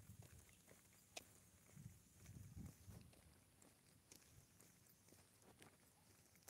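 Near silence, with faint low thumps from walking on a concrete sidewalk while the phone jostles in the hand, and a sharp click about a second in.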